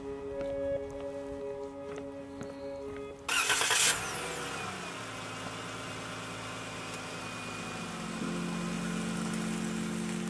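Soft background music, then a sudden loud burst about three seconds in as a car engine starts, followed by the engine running steadily under the music.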